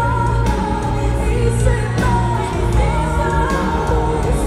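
A woman singing a sustained, gliding pop ballad melody live into a microphone over band accompaniment, amplified through the hall's sound system.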